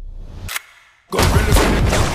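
Film sound effects and score: a low rumble, a single sharp crack about half a second in, a brief hush, then a sudden loud gunshot burst that runs straight into music with a voice.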